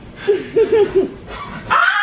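A person's voice: four quick high yelps or laughs in the first second, then a long high-pitched scream that starts near the end.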